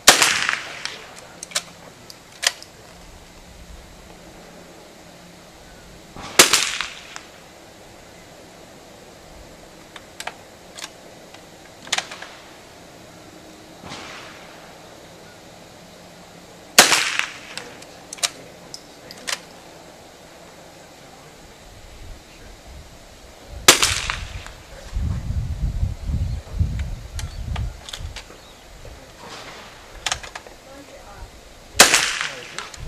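Rifle shots on a covered range: four loud, sharp shots several seconds apart, each with a short echo, with fainter cracks and clicks in between. A low rumbling comes in a few seconds after the last loud shot.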